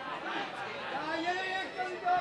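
Voices shouting during open play in a football match, with a long drawn-out call that rises and falls near the middle.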